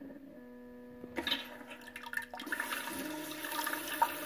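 Alpha Wave bidet seat's nozzle unit at work: a low electric hum for about the first second, then water starts spraying from the extended nozzle into the toilet bowl and runs as a steady hiss, the nozzle's self-cleaning rinse.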